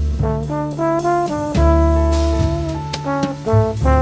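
Big band jazz with a trombone playing a melodic phrase of short notes, then a longer held note, over low sustained bass notes.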